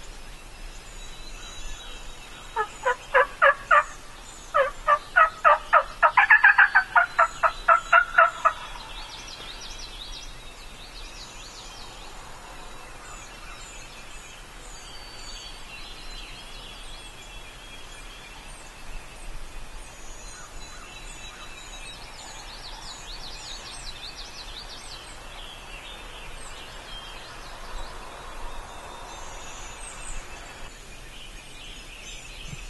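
Turkey yelping, loud and close: a short run of about five yelps, then after a brief pause a longer run of about a dozen, at about four a second. Small songbirds chirp faintly throughout.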